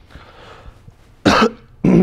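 A man coughing twice: a short, sharp cough a little over a second in, then a second cough near the end that trails off into a falling voiced sound.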